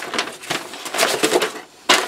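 Paper and cardboard rustling and crinkling as hands rummage through packing paper in a cardboard shipping box, with a sharp crackle or knock near the end.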